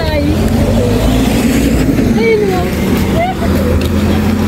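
A motor vehicle's engine running steadily as it passes on the road, a low even hum, with faint voices in the background.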